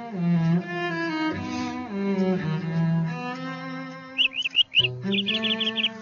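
A slow cello melody of held, gliding bowed notes. About four seconds in, a bird breaks in over it with a fast run of short rising chirps, about six a second.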